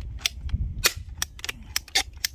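Hand-held scissor-type pipe cutter worked through the plastic housing of a water-purifier filter cartridge: a run of sharp, irregularly spaced clicks, several a second, as the handle is squeezed.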